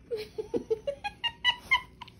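A young girl's high-pitched giggling: a quick run of short squeaky bursts, about five a second, rising in pitch as the laugh builds.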